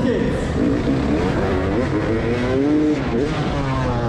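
Motocross bike engine revving up and down in pitch as the bike is ridden down the ramp and launched off the jump, heard from the rider's own bike.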